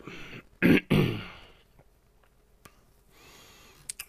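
A man clearing his throat, two short rasping bursts about a second in that trail off. Later, a couple of faint clicks.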